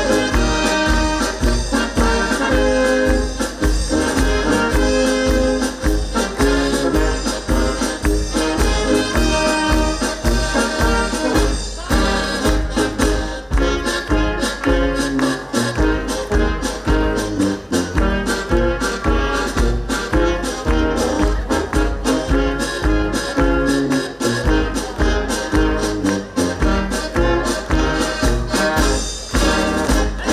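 Village brass band with trumpets, trombones and tuba playing a dance tune over a steady, regular oom-pah bass beat.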